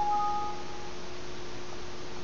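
Windows alert chime: a short electronic ding of two pure notes, the higher one dropping out first, lasting just under a second. It signals a warning dialog that no proper object is selected for painting.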